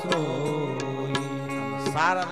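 Devotional singing with accompaniment: a single voice carries a gliding melodic line over steady held notes, with a few sharp percussion strikes.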